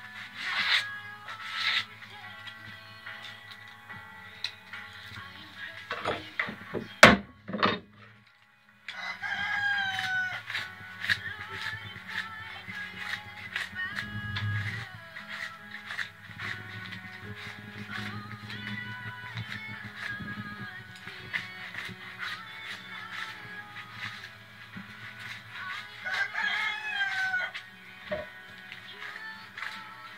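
A rooster crows twice, about ten seconds in and again near the end, over background music. Just before the first crow come a few loud knocks, and light clicks and scrapes of a knife shaving a white oak basket rib run through.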